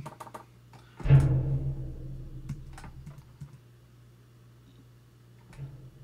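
A few isolated taps on computer keys, spaced a second or more apart, while notes are typed into music notation software.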